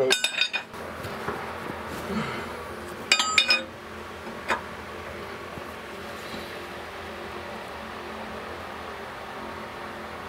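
Steel wrench clinking against the flange nuts and bolts of a steam locomotive's steam pipe as they are tightened inside the smokebox: a short burst of ringing metal clinks at the start, another about three seconds in, then a single tick.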